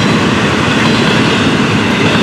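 Double-stack intermodal freight train's well cars rolling past close by: a steady, loud noise of steel wheels on the rails with a continuous clatter.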